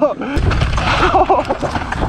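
Mountain bike riding fast down a dirt trail: a heavy low rumble of wind buffeting the microphone and the bike rattling over the ground, with scattered clicks. A voice calls out briefly around the middle.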